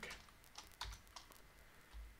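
Faint computer keyboard keystrokes: a few separate key clicks as a short word is typed.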